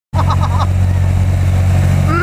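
Boat engine running steadily with a deep, even drone while the boat is underway.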